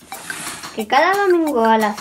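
A short swishing noise, then a voice singing one long phrase that rises and falls in pitch, part of an upbeat jingle.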